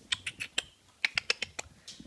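Light, quick clicks and taps from six-week-old Weimaraner puppies moving about at play, in two short runs: a few in the first half-second, then a denser run starting about a second in.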